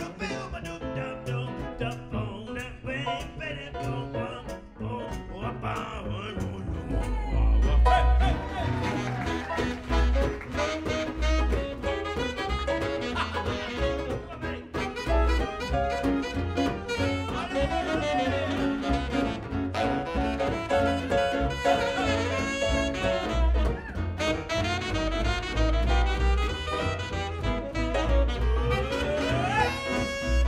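Live jazz band playing an instrumental passage on double bass, keyboard and guitar, with a lead melody line that slides in pitch; the low bass notes grow louder about seven seconds in.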